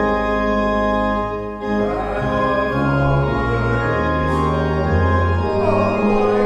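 Church organ playing a hymn: sustained chords over held bass notes, with a short break between phrases about one and a half seconds in.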